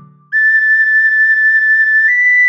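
Soprano recorder playing a quick run of seven repeated tongued notes on one high pitch after a brief rest, with no accompaniment.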